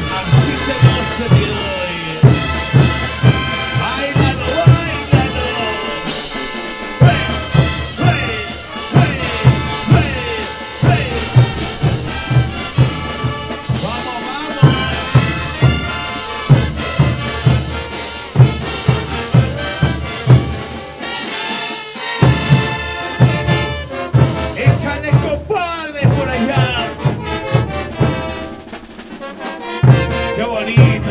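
Large brass band playing a chuta: trumpets, trombones, saxophones and sousaphones over bass drums and crash cymbals keeping a steady beat of about two strokes a second. The drums drop out briefly twice and thin out near the end.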